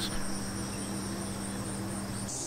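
Steady high-pitched chirring of a summer insect chorus, with a faint steady low hum underneath.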